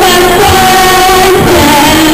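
Female voice singing into a microphone over a strummed acoustic guitar, the held notes wavering slightly.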